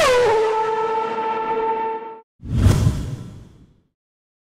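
Formula One car pass-by in an edited outro: a high engine note drops sharply in pitch as the car passes, holds steady and cuts off abruptly about two seconds in. A sudden deep whoosh-and-hit transition effect follows and dies away over about a second.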